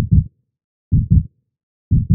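Heartbeat sound effect: three double thumps, low and deep, about one a second, with dead silence between them.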